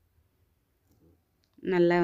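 Near silence with a few faint clicks, then a voice starts speaking in Tamil near the end.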